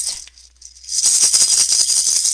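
Hand rattle shaken fast and steadily, starting about a second in.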